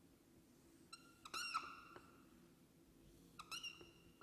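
Felt-tip whiteboard marker squeaking against the board in two short strokes, about a second in and again near the end, in an otherwise quiet room.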